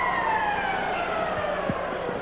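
A single held tone that slides slowly and steadily down in pitch, like a siren winding down, over a background of arena crowd noise.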